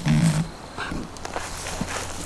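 A dog gives one short, low growl lasting about half a second at the start, then only faint scattered small sounds follow.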